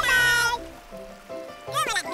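A cartoon character's high-pitched squeaky cry lasting about half a second, then two short arching chirp-like calls near the end, over gentle background music.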